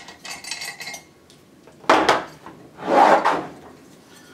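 Metal parts of a Taco 1900 series pump knocking and rattling as the motor and its cover bracket are handled on a table: a sharp clank about two seconds in, then a longer metallic rattle.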